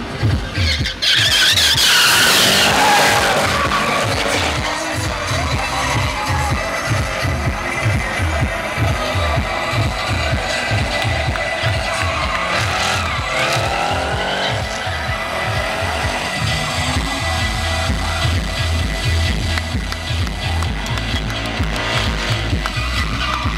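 Drift cars, among them a BMW E36 with an M3 engine, revving and squealing their tyres through sideways slides, over music with a steady beat. The loudest moment is a car sweeping past with a burst of tyre noise about a second or two in; engine pitch climbs and falls again later on.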